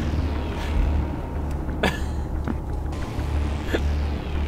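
Steady low road and engine rumble inside a moving car's cabin, with a few faint brief clicks.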